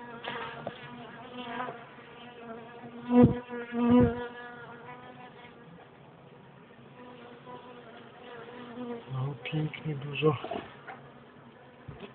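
Honeybees buzzing around an open hive, a steady hum with its pitch near 245 Hz. Two loud thumps come about three and four seconds in.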